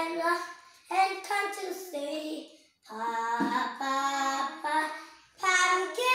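Young children singing a children's song in English, in several short phrases with a brief pause about two and a half seconds in.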